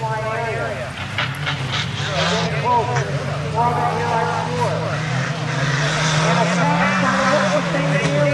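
Small pickup truck engines running hard as the trucks race on a dirt track, a steady low drone that rises and falls a little. A few sharp knocks come about a second or two in.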